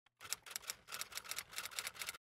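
A quick, fairly faint run of about a dozen typewriter-like key clacks, roughly six a second, used as a sound effect for a text title card.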